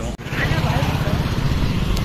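Steady low rumble of wind and road noise from riding in a moving vehicle, with a faint voice beneath. It starts after a sudden brief drop-out just after the start.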